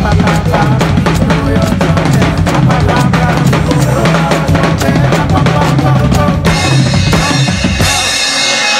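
Drum kit played live along with an Afro-style Christmas song: dense kick, snare and rimshot strokes in a steady groove over the track's bass line, with the cymbals getting brighter near the end.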